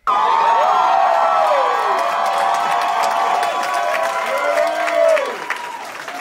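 Comedy club audience cheering and clapping, many voices whooping over one another, easing off a little near the end.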